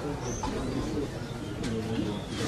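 Birds calling, with a short high chirp about a quarter second in, over low voices in the background.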